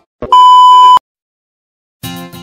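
TV test-card tone over colour bars: a brief crackle, then one loud, steady beep lasting under a second that cuts off abruptly.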